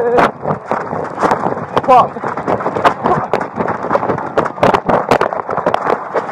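Handling noise of a body-worn camera jostled on a moving officer's uniform: clothing rustle and rapid, irregular knocks, with short bits of speech near the start and about two seconds in.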